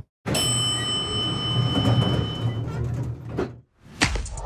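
Elevator chime ringing for about two seconds over the rumble of sliding elevator doors, a sound effect that dies away just before the end.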